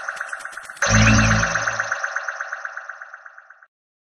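Short electronic logo jingle: a rapidly pulsing synth texture, a louder hit with deep bass a little under a second in, then fading away shortly before the end.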